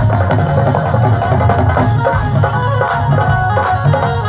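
Live Punjabi stage music playing without vocals, carried by a steady dhol drum beat with a strong bass.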